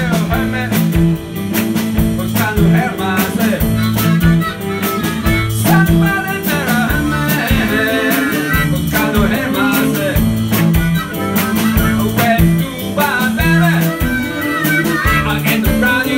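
Live blues band playing: electric guitar and blues harmonica over bass and drums with a steady beat, and a lead line bending up and down above it.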